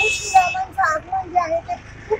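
High-pitched children's voices calling out in a sing-song, chant-like way, with a brief sharp cry right at the start.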